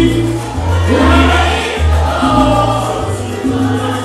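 Live salsa band playing, with voices singing together over a deep bass line of held notes.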